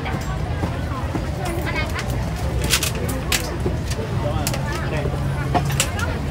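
Crowd chatter at a busy street-food market: many voices talking over one another, with a steady low hum underneath and a few sharp clicks about halfway through and near the end.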